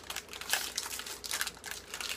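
Plastic wrapper of a Met-RX Big 100 protein bar crinkling in irregular rustles as it is handled and opened.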